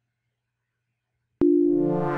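A single synthesized note starts suddenly about one and a half seconds in and rings on, slowly fading, after near silence.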